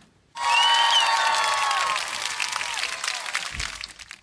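Crowd applauding and cheering, starting suddenly about a third of a second in and dying away near the end.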